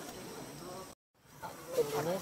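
Steady background hiss that cuts out to silence for a moment about halfway through, at an edit, then fades back in.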